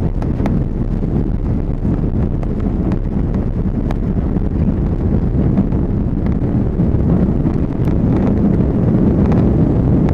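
Airbus A340-300 cabin noise heard from a window seat while taxiing: a steady low rumble of the four CFM56 engines and the rolling wheels, with a few faint ticks. It grows a little louder toward the end.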